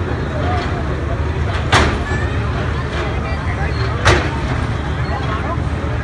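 A Volvo excavator's diesel engine running steadily under the chatter of a large crowd, with two sharp bangs about two and a half seconds apart as demolition work goes on.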